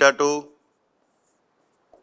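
A man's voice says one word, then after a quiet pause a marker squeaks faintly a couple of times on a whiteboard near the end as he writes.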